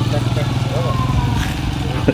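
A small motor running with a steady low buzz that dies down towards the end.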